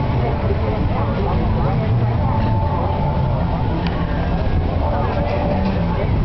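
Fairground background noise: a steady low motor drone under indistinct voices of children and people nearby.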